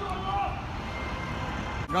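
City street noise: a steady low traffic rumble with indistinct voices, broken off suddenly near the end.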